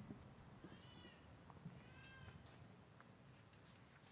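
Near silence: faint outdoor room tone, with two faint, arching high-pitched calls about a second apart.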